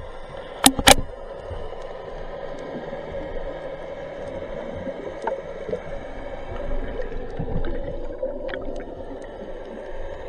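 Underwater sound picked up by a speargun-mounted camera as a spearfisher dives: two sharp knocks about a second in, then a steady, muffled rush of water.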